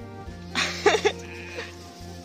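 A sheep bleats once, loudly, about half a second in, with a wavering pitch, over steady background music.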